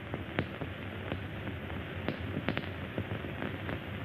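Steady hiss of an old film soundtrack, with a few faint scattered clicks.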